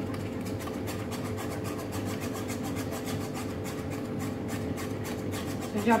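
Wire whisk scraping around a pot, stirring a heating chocolate cream of condensed milk, cream and cocoa in rapid, even strokes.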